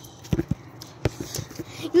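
A volleyball being hit and bouncing, making a few short thumps: two close together about a third of a second in, then one more about a second in.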